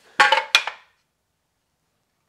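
A man's short laugh with a sharp knock about half a second in, then the sound cuts to dead silence.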